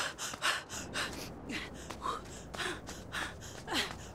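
A woman panting hard while running, quick ragged breaths about two a second, some catching into short voiced gasps.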